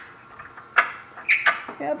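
A few short metallic clicks and clinks of a socket wrench being fitted against a bolt, about three of them in the second half.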